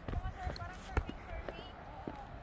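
Footsteps on a dirt and stone hiking trail, a step about every half second, with a low rumble of wind on the microphone.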